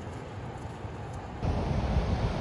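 A faint steady outdoor hiss, then, about a second and a half in, a sudden switch to louder wind buffeting the microphone over breaking surf on the beach.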